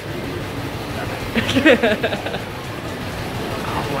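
Engine of a veteran car running steadily after being started up, a low rumble carrying through the hall, with a burst of voice or laughter over it about a second and a half in.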